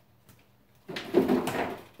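A refrigerator door being handled as the milk goes back in: a noisy burst about a second long, starting about a second in.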